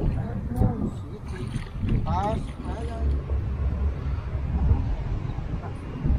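Wind rumbling on the microphone, with brief faint voices in between.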